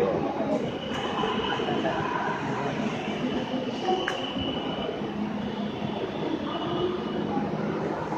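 Metro train running past the platform: a steady rumble with a high, thin whine for the first few seconds.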